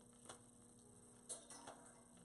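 Near silence: a faint steady electrical hum, with a few soft clicks of a clothes hanger being set onto a metal garment stand.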